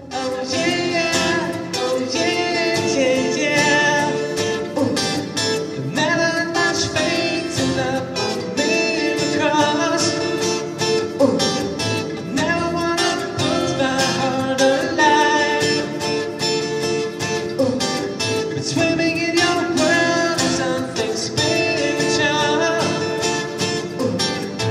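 Live acoustic guitar music with a sung melody, starting right at the opening.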